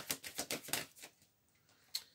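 Tarot cards being handled and shuffled: a quick run of light clicking card snaps in the first second, then a pause and one more click near the end.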